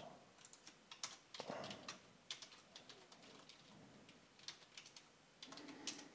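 Faint typing on a computer keyboard: irregular single keystrokes and short runs of them.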